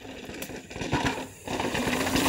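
Mountain bike riding over bare rock: tyre noise with knocks and rattles from the bike, getting louder as it comes closer, with a brief dip in the middle.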